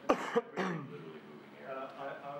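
A cough in the room, two sharp bursts about a quarter second apart just after the start, then a man's voice talking.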